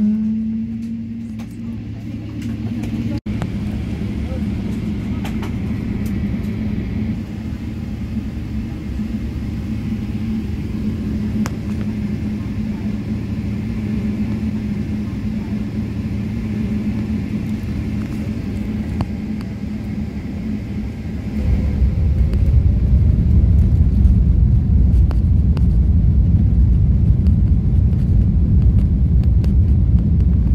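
Boeing 777-300ER's GE90 jet engines heard from inside the cabin: a steady whine over a low rumble at low power. About two-thirds of the way through, the engines spool up to takeoff thrust and the sound becomes suddenly much louder, dominated by a deep rumble.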